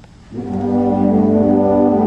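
Symphonic band entering with a loud, sustained chord about a third of a second in, the brass prominent, after a quiet moment at the start.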